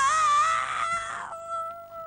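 A single high, held sung note in a mock sean-nós style, wavering slightly and growing quieter about halfway through.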